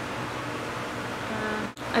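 Steady background hiss of room noise, cut off by a brief dropout near the end.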